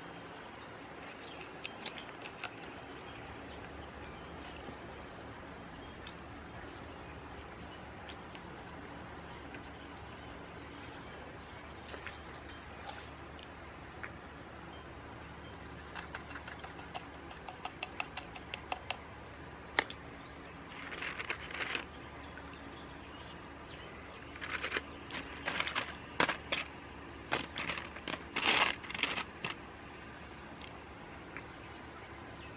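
Hands in thin plastic gloves pressing pieces of broken glass and small stones into wet mortar on a concrete pot: scattered clicks and short crinkly rustles over a steady background hiss. The handling grows busier in the last ten seconds.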